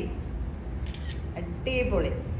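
A woman's voice briefly near the end, over a steady low hum, with a short crisp rustle of saree fabric being handled about a second in.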